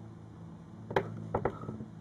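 Quiet room tone with a steady low electrical hum, broken by one sharp click about a second in and two fainter clicks a moment later, small handling sounds.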